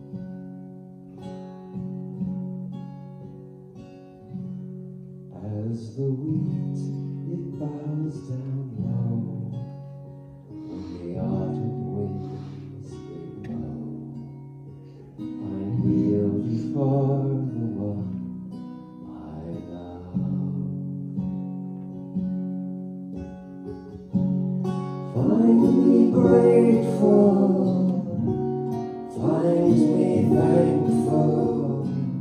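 Acoustic guitar strumming chords while voices sing a song; the singing grows louder about 25 seconds in.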